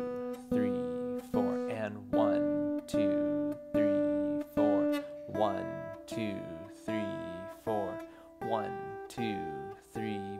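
Acoustic guitar picking single notes of the G pentatonic scale, each note plucked four times in a steady beat about 0.8 s apart, the pitch stepping up three times (B, D, E, then the high G) as the scale climbs. A man's voice counts the beats along with the notes.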